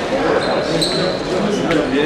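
Épée fencers' shoes squeaking and tapping on the piste during footwork, short high squeaks over a murmur of voices in a large hall.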